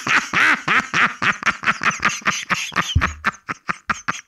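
A goat bleating: one long stuttering call broken into rapid pulses that come faster and fade toward the end.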